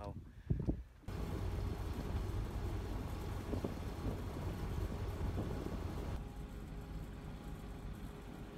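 A catamaran's engine running steadily while the boat motors along, heard as a continuous low hum under a broad rushing noise.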